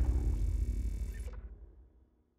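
Low rumbling tail of a logo-intro impact sound effect, dying away steadily and fading out near the end.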